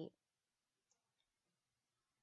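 Near silence, with the tail of a spoken word at the very start and two faint ticks about a second in.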